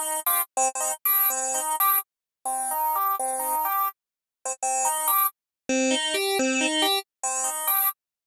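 Spectrasonics Omnisphere software synthesizer playing short phrases of quick stepped notes through two filters in series, a Juicy 24 dB low-pass into a Juicy 24 dB band-pass, with brief gaps between phrases. The filters are switched off one at a time, changing the tone.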